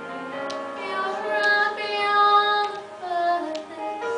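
A girl singing a solo line of a duet into a hand-held microphone, holding long notes, loudest about two seconds in.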